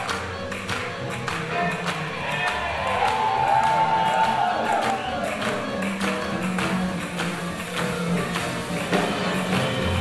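Live swing band playing an up-tempo swing tune with a steady beat on saxophone, accordion, double bass and drums, with a long held note about three seconds in.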